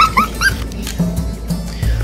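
A brief high-pitched laugh at the start, over steady background music.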